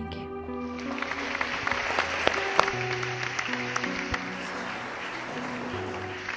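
Applause over background music of held chords; the clapping comes in about a second in and carries on.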